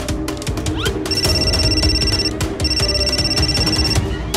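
A phone ringing twice, each a trilling ring lasting a little over a second, the first starting about a second in. Dramatic background music plays under it.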